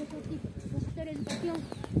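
Speech: voices talking, with a few short sharp clicks.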